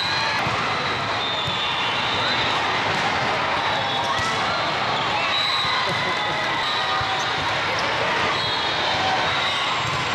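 Busy din of a large hall with many volleyball matches going at once: overlapping voices, volleyballs being struck and bouncing, and brief high-pitched squeaks scattered throughout, at a steady level.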